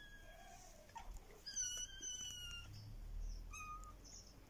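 Young kittens mewing in high, thin calls: a short mew at the start, a longer one of about a second in the middle, and a short one near the end.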